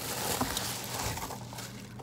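Rustling and scraping of a cardboard box and its bubble-wrap packing being handled by hand: a continuous rustle with a few small clicks.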